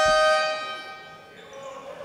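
A referee's whistle, held long and steady, calling a travelling violation. It stops just after the start and rings away in the sports hall's echo over about a second and a half.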